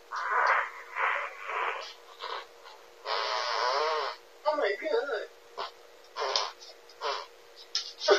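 Speech picked up through a pet camera's narrow-band microphone, in short bursts. About three seconds in there is a rasping, wavering sound lasting about a second.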